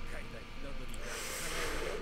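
A man's soft breathy exhale through the nose close to the microphone, a quiet amused snort, with faint speech underneath.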